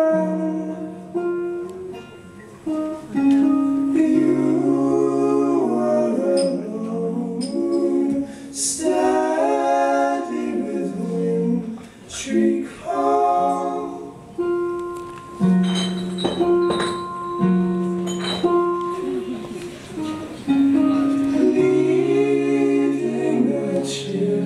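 Live indie-folk band playing: guitar under several voices singing long held notes in harmony.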